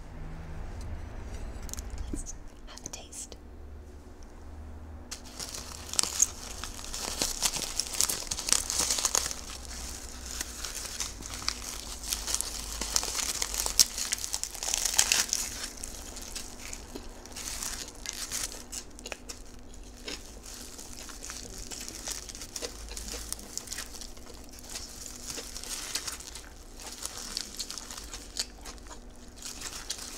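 Close-up eating sounds: a crisp nori seaweed wrapper crackling and tearing as a hot dog taco is bitten and chewed, with wet mouth sounds. The crackling starts about five seconds in and goes on in dense bursts.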